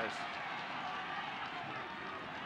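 Steady murmur of a crowd of spectators, a haze of many distant voices with no single clear voice.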